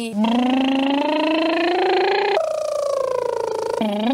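A young woman's voice doing a vocal warm-up exercise: one long held note that slides slowly upward, then, a little past halfway, switches abruptly to a higher note held with a slight downward drift.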